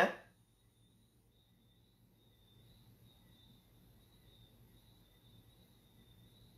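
Near silence: room tone with a faint, steady high-pitched tone. A man's voice trails off just at the start.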